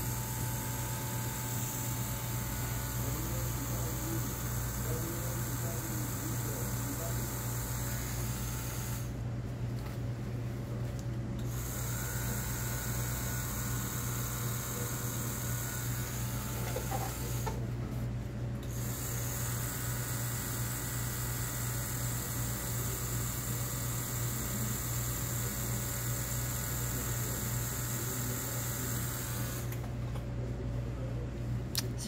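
Tattoo machine running with a steady hum as the needle works ink into skin.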